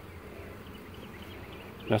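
A honeybee colony buzzing steadily around an opened hive, a continuous even hum.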